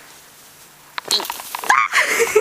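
After a quiet first second, a sharp click, then a woman's high-pitched yelps and squeals as she shakes the snow off a laden tree branch onto herself.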